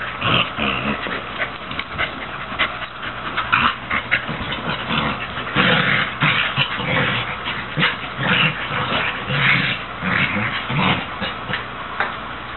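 A red heeler pup and a beagle mix play-fighting, growling and whining in short, irregular bursts throughout.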